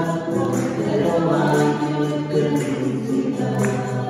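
A group of voices singing a slow hymn together, holding long notes, with light percussion ticking in time.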